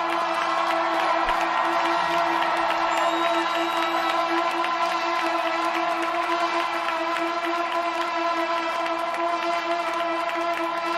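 Trombone holding one long, unbroken note with a pulsing quality, kept going by circular breathing, over a rock band and a cheering arena crowd.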